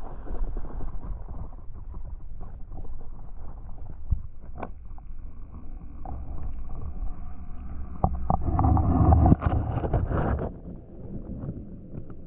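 Handling noise and water sloshing as a GoPro is lowered into an aquarium, heard through the camera's own microphone as a muffled low rumble with scattered knocks. The sound is loudest for about two seconds around eight seconds in, then turns quieter and duller once the camera is underwater.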